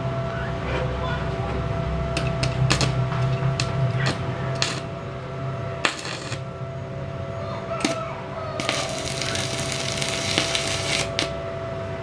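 Electric arc welding with a stick electrode: irregular sharp crackles and clicks as the arc is struck and burns, then a few seconds of steady, dense crackling and sizzling from the arc near the end. A steady low hum runs underneath in the first half.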